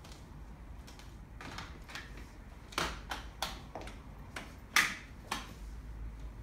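Bugaboo Cameleon3 stroller seat being turned round and clicked back onto its frame: a few soft knocks, then a run of sharp clicks and knocks from about halfway, the loudest about a second before the end.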